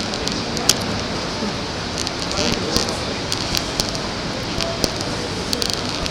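Busy train-station platform ambience: a steady rushing noise with faint voices and scattered sharp clicks.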